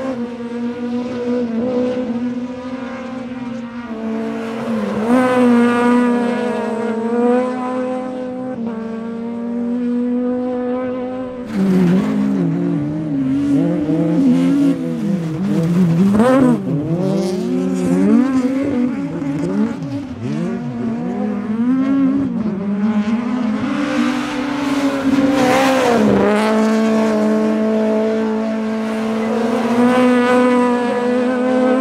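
Several rallycross cars racing on the circuit, their engines revving and dropping in pitch as they accelerate, shift and brake past, over a steady engine drone. From about twelve seconds in, several engines are heard at once, their pitches crossing.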